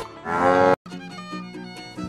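A cow mooing once, a loud short call that cuts off abruptly under three-quarters of a second in, followed by quieter background music with held notes.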